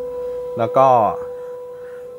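A steady held musical tone from a film trailer's soundtrack. A man speaks a couple of words over it about half a second in.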